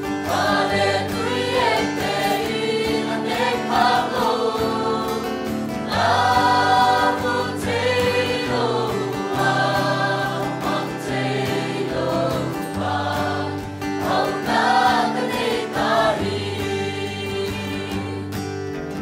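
Mixed church choir of women and men singing a gospel hymn in phrases, over low accompaniment chords that are held and change every second or two.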